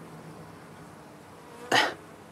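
Faint steady buzzing of honeybees clustered on the ground. Near the end comes a short, sharp breath or throat noise from the person filming, the loudest sound here.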